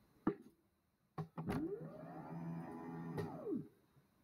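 A few sharp clicks, then a small electric motor whirring for about two seconds: its pitch rises, holds steady, and falls away as it stops.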